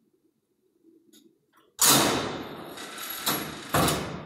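Steel loading gate of a vertical hydraulic cardboard baler slamming shut about two seconds in, with a metallic clatter that rings away, then two more sharp metal bangs near the end.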